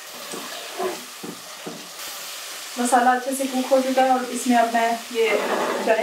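Thick masala gravy sizzling in a pot as a spoon stirs it, with a few soft scraping strokes in the first couple of seconds; the gravy is cooking down to a finished masala. From about halfway, a woman's voice talks over the sizzle.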